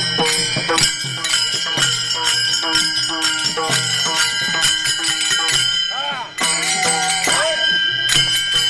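Many pairs of small brass hand cymbals (taal) clashing in a fast, steady rhythm, their ringing held between strikes. The sound dips briefly about six seconds in.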